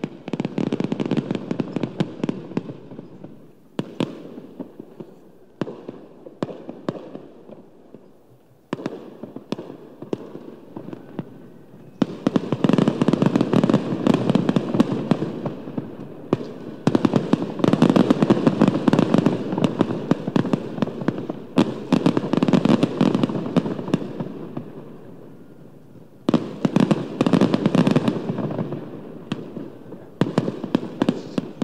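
Strings of firecrackers going off in a rapid, dense crackle, in several bursts with short pauses between them; the loudest runs come in the middle.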